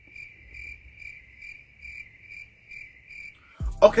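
Crickets chirping as a comic 'awkward silence' sound effect: a steady high trill pulsing a few times a second that cuts off suddenly near the end.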